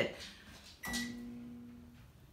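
A single chime-like note that sounds about a second in and rings away over about a second.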